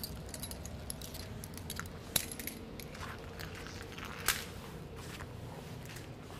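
Metal clips of resistance-band handles clicking and clinking as they are clipped onto the band, with two sharper clicks about two and four seconds in.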